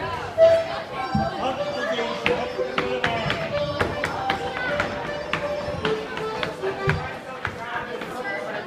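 Live Irish ceili band playing a dance tune for set dancing, with dancers' feet tapping on a wooden floor in many sharp, quick strikes, and crowd voices mixed in.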